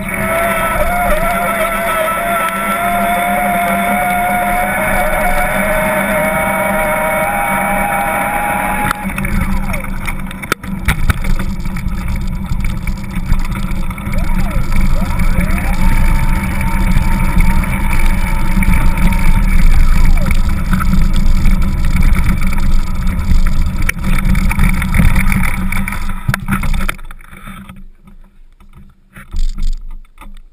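Wind buffeting a GoPro's microphone on a moving electric bicycle: a rough low rumble that rises and falls. A steady, wavering whine runs over it for about the first nine seconds, and near the end the rumble dies away.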